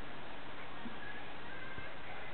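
Steady background hiss with no clear event, the acoustic guitar's strummed notes having died away. A few faint, brief high tones sit in the second half.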